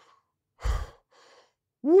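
A man's heavy breath out close to the microphone about half a second in, then a fainter breath. Near the end he starts a loud, steady 'woo'.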